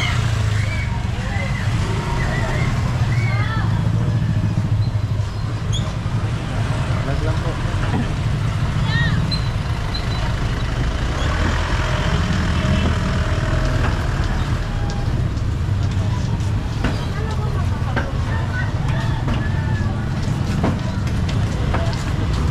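Street ambience: small motorcycle and motorcycle-tricycle engines rumble steadily close by, with scattered voices in the background and a few light knocks.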